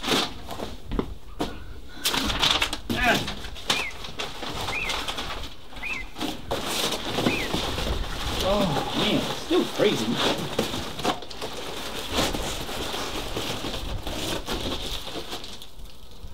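Crinkling, rustling and scraping of foil-faced insulation rolls being lifted and unrolled by hand, in many short crackles. Short rising bird chirps sound now and then in the first half.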